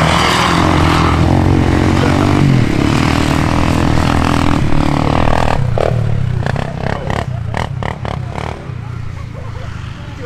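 Off-road vehicle engine revving hard, its pitch rising and falling, for about the first half. Then comes a run of sharp knocks and clatter, and a quieter engine keeps running near the end.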